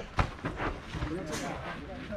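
One sharp smack of a boxing glove landing a punch, about a quarter second in, over faint voices of onlookers.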